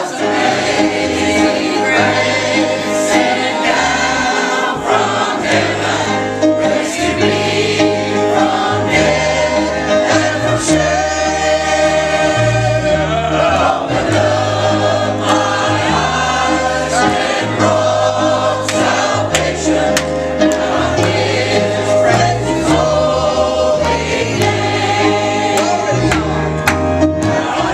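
Church choir of mixed voices singing a gospel hymn together, over instrumental accompaniment with a bass line moving in steady steps.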